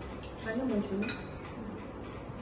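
Spoons and forks clinking against plates and bowls at a dining table as food is served and eaten, with a couple of light clicks, the clearest about a second in.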